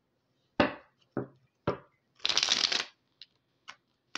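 A tarot deck being handled: three sharp knocks of the cards on the table, then a brief crackling shuffle of the cards lasting under a second, then a couple of faint clicks.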